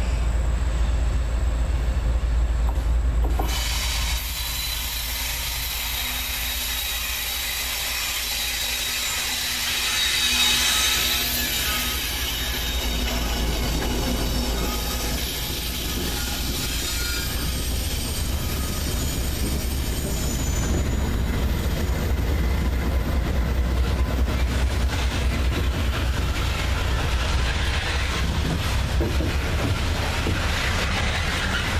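Freight train of GE diesel locomotives passing close by on a curve, the noise rising sharply about three seconds in as the locomotives reach the microphone. Loaded coal hoppers then roll past with steady wheel-on-rail noise and a thin wheel squeal at times.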